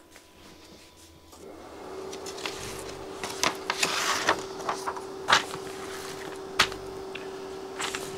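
Paper instruction sheet rustling as a page is turned, with light clicks and taps of small metal chassis parts handled on the work table. A steady hum comes in about a second and a half in.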